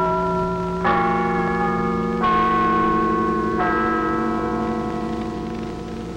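Tower bells chiming a slow run of notes. A new bell is struck about 1, 2 and 3.5 seconds in, and each rings on into the next, dying away a little toward the end.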